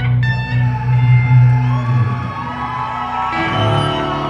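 Live heavy metal band playing: a few picked electric guitar notes, then held, ringing chords over a low bass note that drops out about halfway through.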